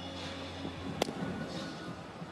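Ballpark crowd ambience under background music, with one sharp crack about a second in.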